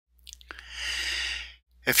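A man takes an audible breath in through the mouth, about a second long, then starts to speak.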